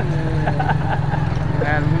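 Motorcycle engine idling with a steady low, evenly pulsing rumble under talking voices.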